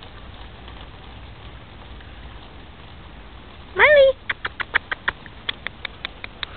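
A boxer dog's single short, high yelp during rough play, rising in pitch, a little before the four-second mark. It is followed by a quick run of sharp clicks.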